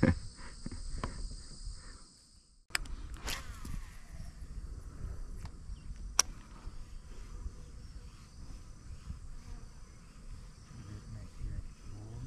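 Insects chirping: a steady high buzz that stops short about two seconds in, then, after a brief gap, a high chirp repeating at an even pace, with a few faint clicks and one sharp click about six seconds in.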